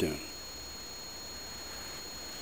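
The end of a spoken word, then a steady faint hiss with a thin, high-pitched steady whine: the recording's own background noise in still air.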